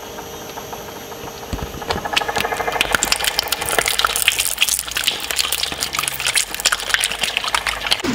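A twin-shaft metal shredder runs with a steady hum. From about two seconds in, its blades crush and tear a liquid-filled plastic bottle, with dense crackling of plastic as the contents gush out.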